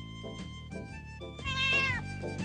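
A cat's meow, falling in pitch, sounds about one and a half seconds in over light instrumental music of plucked and held notes.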